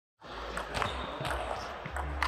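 Table tennis rally: the ball clicking sharply off the paddles and the table, a few hits about half a second apart, over a low steady hum in a large hall.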